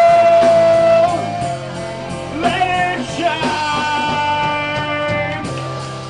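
Rock band playing live in a small bar, loud, with a singer holding long notes over electric guitar.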